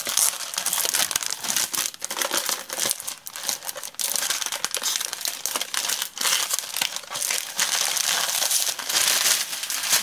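Clear plastic wrapper crinkling and crackling continuously as a paper pad is pulled out of its sleeve and the plastic is handled.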